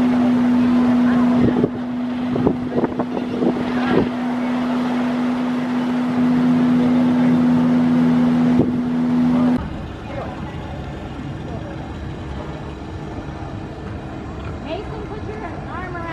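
A boat's engine drones steadily, with a few knocks over it. At about ten seconds it breaks off and a quieter background follows, with faint voices.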